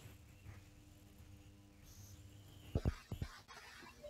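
A quiet pause: faint room tone on the call line, with a short cluster of three or four soft clicks a little under three seconds in.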